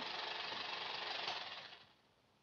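Film editing machine running steadily with a mechanical clatter, fading out over the last half-second.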